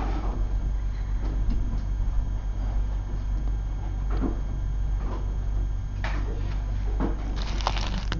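A few faint taps and rustles of small items being handled on a tabletop, over a steady low hum.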